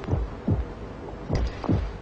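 Heartbeat sound effect: slow, steady lub-dub double thumps, about one beat every 1.2 seconds, with two heartbeats heard.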